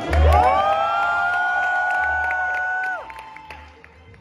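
Audience whooping and cheering: several voices rise together and hold a high call for about three seconds, then fall away, over backing music.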